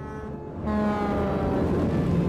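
A large road vehicle passing close by: a loud rush comes up suddenly under a second in, its pitch falling slowly as it goes by.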